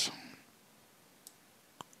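A spoken word trails off, then near silence broken by two faint short clicks, the second just before the voice resumes.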